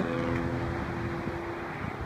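Outdoor background noise with a faint steady hum that fades out about three-quarters of the way through.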